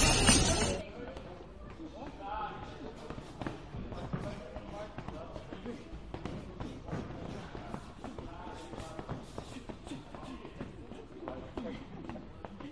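Repeated punches thudding into a woman's abdomen in ab-conditioning drills, several blows a second, with faint voices in the gym behind. A louder stretch in the first second cuts off abruptly.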